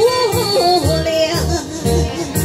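A woman's amplified singing voice holding a wordless melody that slides between notes, over a backing track with a steady beat.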